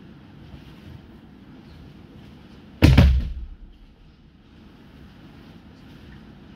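A judoka thrown onto tatami mats, landing in a breakfall with one heavy thud about three seconds in; the low boom of the mats dies away within about half a second.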